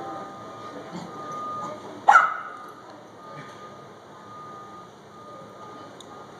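Puppies playing, with one puppy giving a single loud, sharp bark about two seconds in. A faint high steady tone comes and goes several times behind it.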